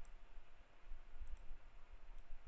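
A few faint computer mouse clicks over a low steady hum.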